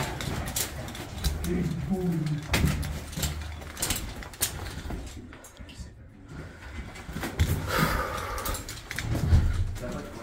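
Footsteps and scuffs on the rocky floor of a mine tunnel, a scatter of sharp clicks and crunches, with short stretches of indistinct voices from people nearby.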